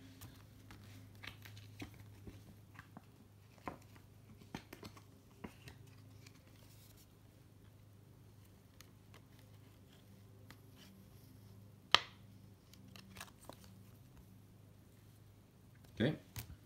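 Faint clicks and light rustles of 1990 Fleer cardboard basketball cards being handled and flipped through one by one, with one sharper click about twelve seconds in. A low steady hum runs underneath.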